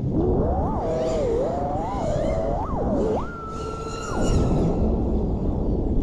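FPV quadcopter's Axis Flying Black Bird V3 1975kv brushless motors and propellers whining, the pitch rising and falling with the throttle and held at its highest for about a second in the middle under full throttle, over rushing air.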